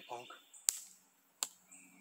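A spoken word ends, then two sharp clicks about three-quarters of a second apart.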